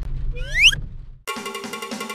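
A low vehicle-cabin rumble, then a short rising whistle sound effect about half a second in. Just past a second in, it cuts to instrumental music.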